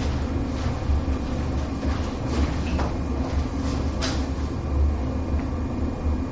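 A steady low rumble of room noise, with a few faint, short scratches of chalk writing on a blackboard.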